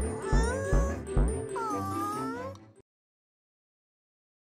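Cartoon background music with a steady beat, and over it a cartoon character's high, wavering voice sound with pitch glides down and up. The music and voice cut off suddenly a little under three seconds in.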